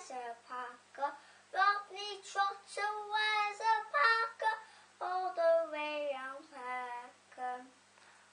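A young girl singing unaccompanied, a line of held, pitched notes that stops shortly before the end.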